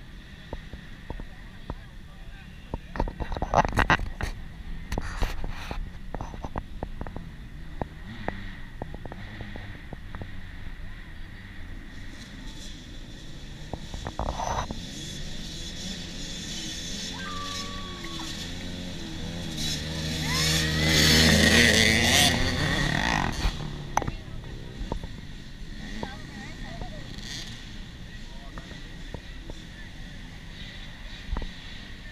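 A pack of small dirt bike engines revving unevenly, the sound building to its loudest about two-thirds of the way through and then fading quickly. A few sharp knocks come near the start.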